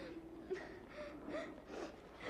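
Faint, breathy sobbing of a boy weeping: a few short catches of breath.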